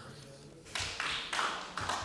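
Applause in a large chamber, starting a little under a second in.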